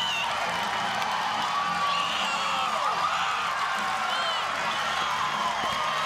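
Stadium crowd at a softball game cheering a home run: a steady wash of cheering with a few high whoops rising above it.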